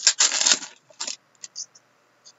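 Hockey trading cards being handled and slid against one another: a crisp rustling, clicking flurry through the first second, one short burst just after, then a few faint ticks.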